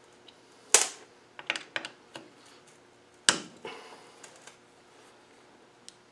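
Sharp metal clicks and clinks of a screwdriver against a starter motor's end cover and screws: a loud click about a second in followed by a quick run of lighter ones, then another loud click about three seconds in followed by a few more.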